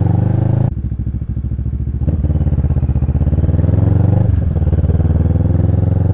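Motorcycle engine running as the bike is ridden. Its note drops sharply just under a second in, then rises gradually, with a brief dip a little past the middle.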